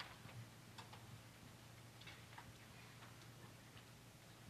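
Near silence: room tone with a low steady hum and a few faint, scattered soft clicks.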